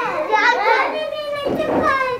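A group of young children calling out different answers all at once, their voices overlapping.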